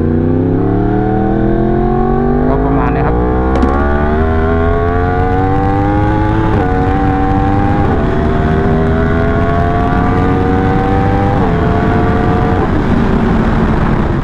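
Yamaha R1M's 998 cc crossplane inline-four accelerating hard from a stop with traction control at its highest setting, 9. The engine note climbs steadily through each gear, with quick dips in pitch at several upshifts, over wind rush on the microphone.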